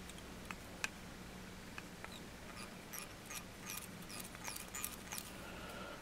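Faint scattered ticks and tiny squeaks of fly-tying thread being wrapped under tension over hen pheasant feather stems on a hook, growing more frequent toward the end, over a low steady hum.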